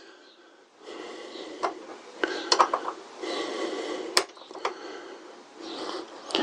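Rustling, with a few light clicks and clinks, the sharpest a little after four seconds in: hand tools and bits of kit being handled and set down.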